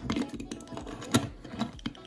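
Small clicks and taps of a toy car's removable frosting shell being pressed and fitted onto a die-cast toy car, with one sharper click about a second in.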